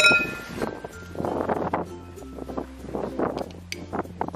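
A metal spoon clinks once against a drinking glass and rings briefly, over background music.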